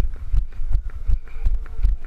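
Running footsteps on asphalt, close to the microphone: low thuds in a steady rhythm of about three a second.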